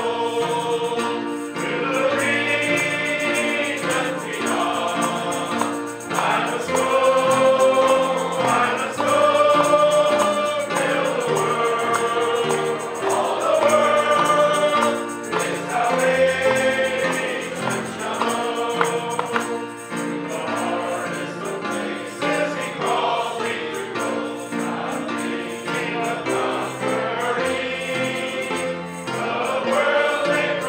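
A congregation of mixed voices singing a hymn together.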